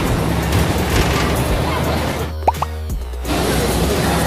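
Loud din of an indoor amusement-park play area with music playing over a steady low hum. The noise thins out for about a second near the three-second mark, where a couple of short rising tones sound.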